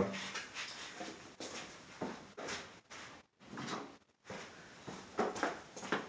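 Faint, scattered knocks and rustles of tools being handled and moved about, a few soft separate sounds with short silences between them.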